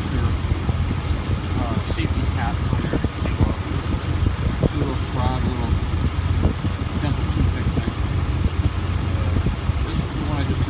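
5.7 Hemi V8 in a 2011 Dodge Ram 1500 idling steadily, recorded close under the open hood.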